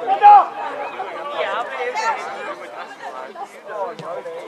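Several voices talking and calling out over each other, with one loud, short shout about a quarter of a second in.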